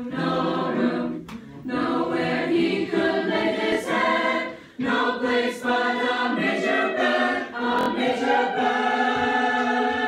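A school choir of young voices singing unaccompanied in parts, holding chords in long phrases with short breaks for breath about a second in and again near five seconds in.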